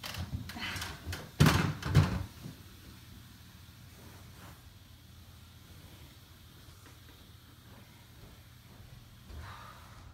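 Two sharp thumps about a second and a half and two seconds in, with lighter knocking and handling noise just before them. The rest is quiet room tone with a steady low hum and one soft bump near the end.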